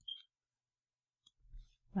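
A single short click from operating the computer, just after the start; otherwise near silence.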